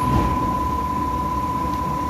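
Steady background noise: a low rumble with a constant high-pitched whine running through it.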